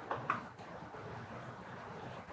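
Thin stream of water from a gooseneck kettle pouring onto coffee grounds in a paper-filtered April plastic pour-over brewer: a faint, steady trickle.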